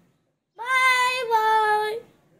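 A young boy singing a long held note that starts about half a second in, then steps slightly lower in pitch midway and holds to the end.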